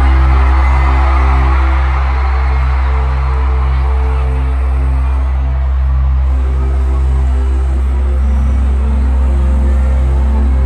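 Live stadium concert music heard through a phone's microphone: a heavy, steady deep bass drone with a low note pulsing about twice a second, under crowd noise that fades over the first few seconds.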